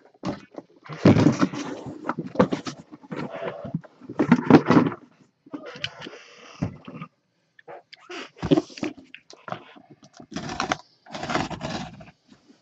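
Cardboard boxes being handled and slid about on a table: irregular bursts of scraping, rustling and light knocks, each about half a second to a second long.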